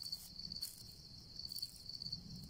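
Crickets chirping: a faint, steady high trill of short repeated pulses.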